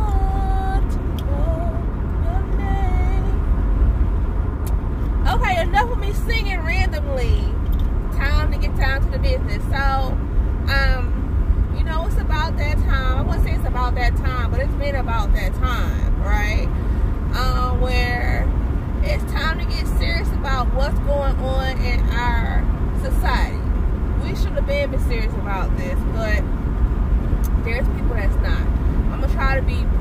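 A woman talking almost without pause over the steady low rumble of a car on the road, heard from inside the cabin.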